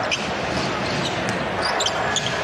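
Arena crowd noise under a basketball being dribbled on a hardwood court. A few short, high sneaker squeaks come near the end.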